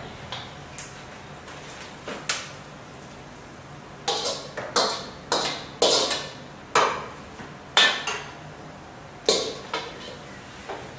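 Metal clanking of a wok: a few light knocks, then a run of about eight louder sharp metallic knocks and scrapes, as stir-fried chicken is scraped out of the wok onto a steel tray.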